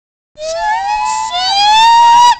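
A group of young people's voices chanting the word 'sheep' in one long, drawn-out high note that glides upward, starting about a third of a second in, with a second voice joining in the last half second.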